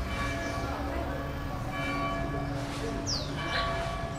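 Church bells ringing: repeated strikes, each leaving long ringing tones at several pitches, over a low background rumble.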